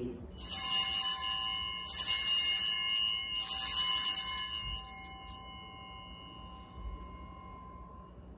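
Altar bells rung in three jangling rounds about a second and a half apart, each a cluster of high ringing tones, then dying away over several seconds. They mark the elevation of the chalice at the consecration.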